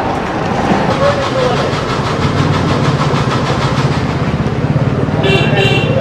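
Street traffic noise with a small vehicle engine running close by, and a vehicle horn sounding near the end.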